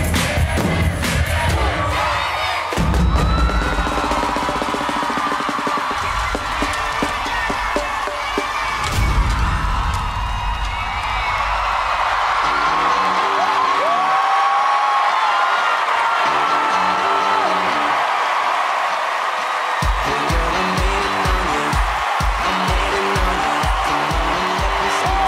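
Youth drumline of snare and bass drums playing its closing hits, then a crowd cheering and whooping over music. A steady pounding beat comes in near the end.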